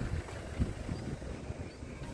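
Low rumble of a car's engine and tyres on the road, heard from inside the moving car, with wind gusting on the microphone.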